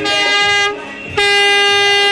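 A horn sounding two steady, unwavering blasts: a short one at the start and a longer, louder one of about a second starting just past the middle.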